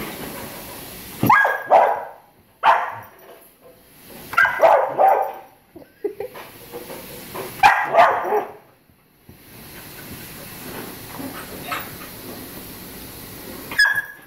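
Puppy barking at shadows on the wall, in four short bursts of one or two barks each over the first nine seconds.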